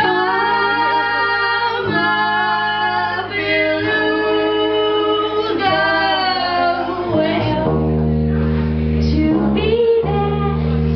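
Live band performing: a woman sings long held notes over electric bass guitar and other instruments. The bass line turns heavier and lower about three-quarters of the way through.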